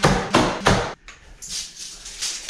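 Nails being driven into a 2x4 wall frame: a fast, even run of sharp strikes, about three or four a second, which stops about a second in and gives way to quieter, lighter clatter.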